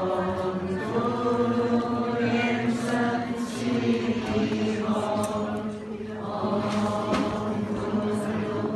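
Many voices chanting a Buddhist mantra together in long held phrases.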